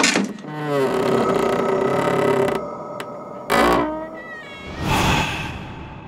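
An animal-like yowl: a long cry that falls in pitch and then holds, a second, shorter falling cry about three and a half seconds in, then a noisy swell about five seconds in that fades away.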